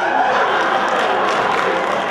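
Audience applauding right after a sung number ends, steady dense clapping with faint music still sounding beneath.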